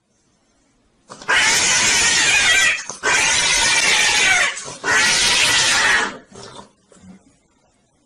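A cat being mounted by another cat yowls loudly in three long, harsh cries, the first starting about a second in.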